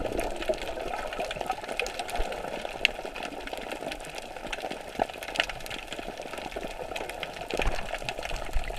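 Underwater sound through a camera held below the surface: a continuous muffled water noise full of fine crackling clicks, with a few louder sharp clicks.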